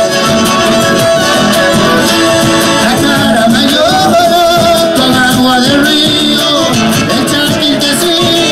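Live Argentine folk music through a stage PA: men singing over fiddles, guitar and bombo drums, loud and continuous.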